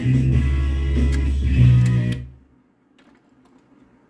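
A 45 rpm record playing music through the record player, cutting off suddenly about two seconds in, followed by a few faint clicks.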